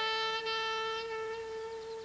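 Background music from a commercial: a solo wind instrument holds one long note that fades near the end.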